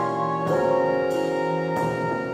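Jazz ensemble recording: horns hold sustained chords over bass and drums. The chord changes about half a second in and again near the end, with a cymbal-like stroke there.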